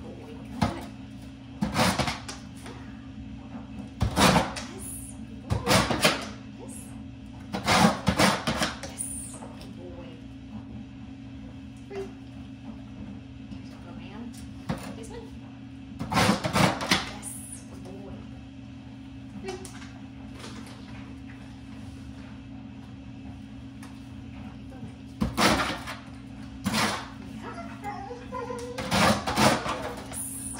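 A dog's claws scratching across the sandpaper panel of a nail scratch board in several short bouts, each lasting a second or less, scattered through the stretch. A steady low hum runs underneath.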